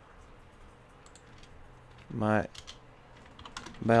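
Faint, scattered clicks of a computer keyboard and mouse. A little past halfway a man's voice briefly sounds a single word or murmur, and another word begins right at the end.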